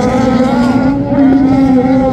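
Several Volkswagen Beetle autocross cars racing on a dirt track, engines running hard with overlapping pitches that rise and fall as the drivers work the throttle.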